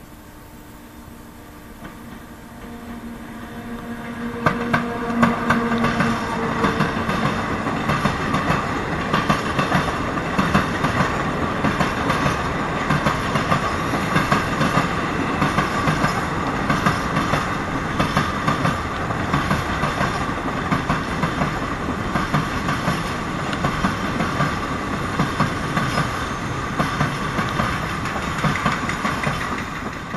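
Electric locomotive hauling a freight train, approaching with a steady hum that grows louder and passes close about four seconds in. A long string of loaded open freight wagons follows, rolling by with a continuous rhythmic clickety-clack of wheels over the rail joints.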